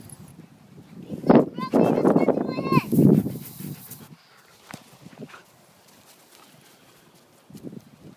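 A Doberman's play noises close to the microphone: loud huffing with a quick run of short, rising whines between about one and four seconds in.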